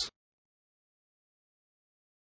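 Silence: the last fraction of a word from a synthesized text-to-speech voice cuts off at the very start, then nothing at all.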